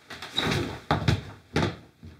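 A door being banged shut: three heavy thuds over about a second and a half, the loudest about a second in.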